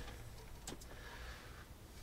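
Quiet room tone with two faint light clicks close together a little after half a second in, small handling noises as a steel BB is held over a digital pocket scale.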